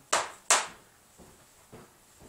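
Two sharp paddle slaps on the open ends of a PVC pipe instrument, about half a second apart, followed by a few faint taps.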